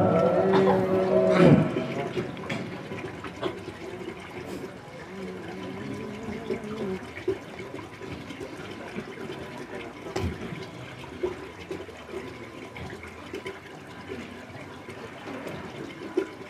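A Quran reciter's chanted note, amplified through a microphone, glides down and ends about a second and a half in. A pause in the recitation follows, filled with faint murmuring voices, a few small clicks and hall noise.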